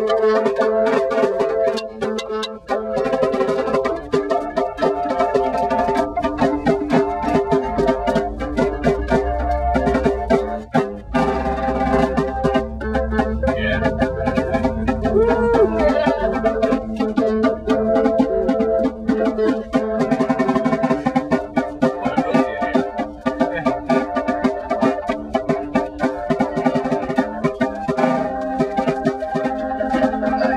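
A small band playing live music: sustained chords over a quick, steady run of percussion hits.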